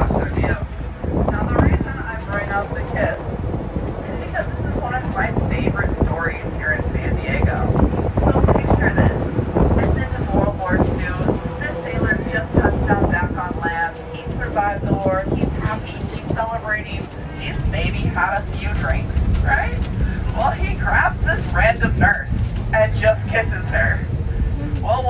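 Indistinct talking over the low rumble of a moving open-top tour vehicle, with wind on the microphone.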